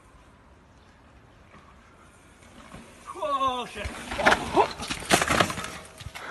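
A mountain bike crash on a dirt trail: after a faint outdoor hush and a short cry, bike and rider hit the ground in a cluster of sharp knocks and clatter over about a second and a half.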